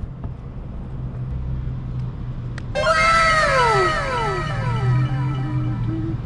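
An edited-in musical sound effect starts suddenly about three seconds in: several overlapping pitched tones slide downward one after another and end on a short held low note. Before it there is only a steady low hum.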